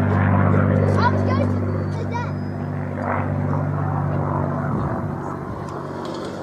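Supermarine Spitfire's V12 piston engine droning overhead in a steady low note. It fades as the aircraft draws away, and the note wavers and breaks up about five seconds in.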